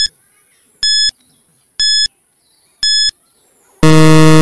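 Quiz countdown timer sound effect: a short high beep once a second, four times, then a loud, low, longer buzzer starting near the end as the countdown reaches zero, signalling that time is up.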